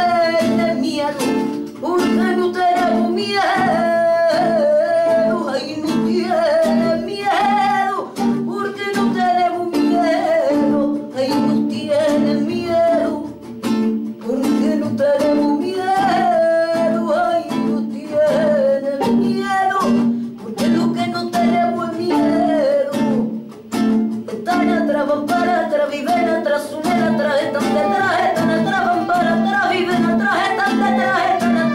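A woman singing a song live to her own strummed acoustic guitar, with a violin accompanying.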